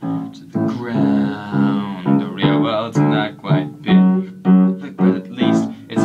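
Music from an original piano song, in a passage without lyrics: piano chords struck at an even pulse of about two a second.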